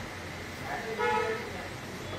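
A short, steady-pitched toot about a second in, over the steady low hum of the refrigerator compressor running during gas charging.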